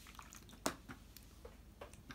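Faint clicks and light taps from painting materials being handled, with one clearer click about two-thirds of a second in.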